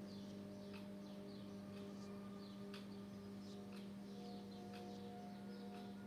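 Quiet room tone: a steady low hum, with faint short high chirps scattered through it.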